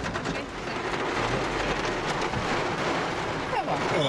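Heavy rain drumming on a car's roof and windows, heard from inside the car as a dense, steady patter.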